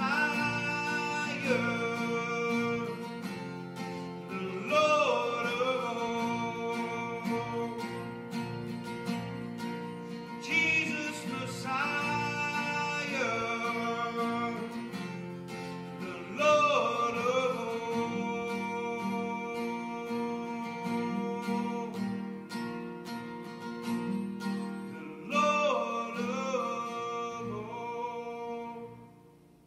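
Slow praise and worship song played on acoustic guitar, with a man singing long, drawn-out phrases over the chords.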